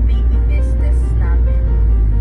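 Low, steady road and engine rumble inside a moving car's cabin, with background music over it.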